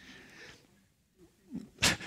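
A man's breathing close on a microphone during a pause in speech: a soft breath out, about a second of near silence, then a quick, sharp intake of breath near the end.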